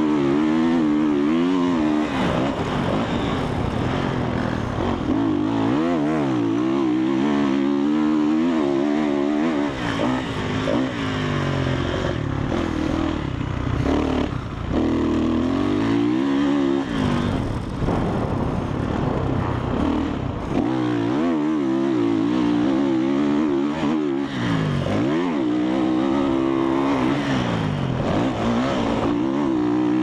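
Dirt bike engine being ridden around a motocross track, its pitch climbing and dropping again and again as the throttle is opened and shut through the turns and straights. It is heard close up from a helmet-mounted camera.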